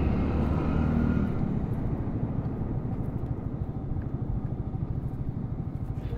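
Yamaha R15 V3's single-cylinder engine running at low road speed, a steady low pulsing rumble that grows a little quieter as the ride goes on.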